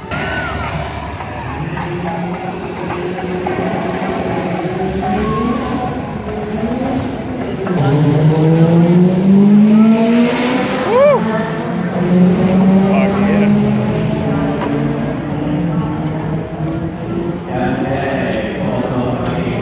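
Race car engines accelerating on the drag strip, their pitch rising in long sweeps, one after another; the loudest run comes about eight to eleven seconds in.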